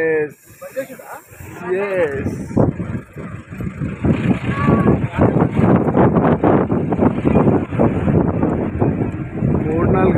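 Brief voices over the noise of a moving vehicle. From about four seconds in, a louder rushing noise with rapid flutter takes over, wind and road noise on the microphone of a vehicle in motion.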